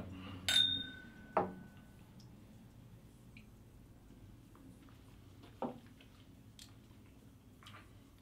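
Two whiskey glasses clinking together in a toast, a single clink with a short ringing tone. Soft knocks follow, one about a second later and another past the middle.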